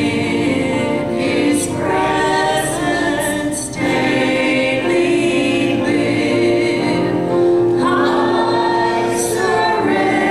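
A congregation singing a hymn together, in long held notes.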